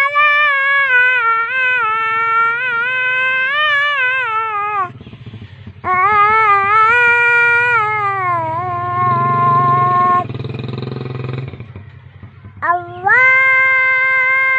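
A high-pitched voice chanting Arabic in long, melismatic held phrases, Islamic chant in the style of the call to prayer. Two long phrases, the second ending on a steady held note, then a pause of about two seconds before a third begins.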